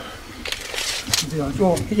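A short rustle about half a second in, then a man's voice speaking briefly near the end.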